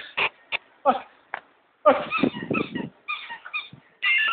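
A Belgian Malinois barking in a series of short, quick barks.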